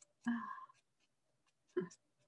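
A woman's soft, murmured speech, heard as two short utterances, with faint light ticks between them.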